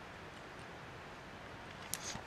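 Faint steady hiss of room tone, with a single sharp click near the end: a computer mouse click as a piece is moved on the on-screen chessboard.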